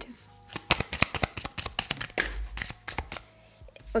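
A tarot card deck shuffled by hand: a quick run of crisp card clicks, then a softer swish of cards.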